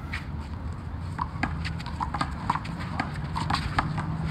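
A one-wall handball rally on an asphalt court: quick footsteps and sneaker squeaks, with sharp slaps of the ball off hands and the wall. From about a second in there is a rapid string of short knocks and squeaks.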